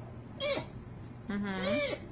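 Baby sea otter squealing: a short high call about half a second in, then a longer wavering one near the end.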